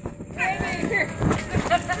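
Children's high voices calling out in short snatches, with a couple of brief rustles or knocks in the middle.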